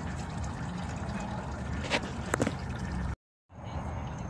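Automatic transmission fluid trickling and dripping from a 46RE's loosened valve body into a drain pan, over a low steady hum, with a couple of light clicks about two seconds in. The sound cuts off abruptly a little past three seconds.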